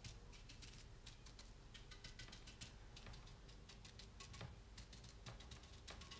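Faint, rapid, irregular tapping of a paintbrush stippling wet paint onto a fiberglass urn.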